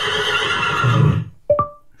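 Recorded horse whinny played through a Google Home smart speaker as a guess-the-animal quiz sound. It ends a little over a second in and is followed by a short electronic beep.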